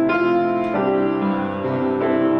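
Grand piano played slowly, with sustained chords ringing and a new chord struck a little under a second in.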